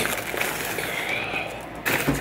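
Takeout food packaging being handled: a plastic bag crinkling and rustling, with a sharp knock near the end.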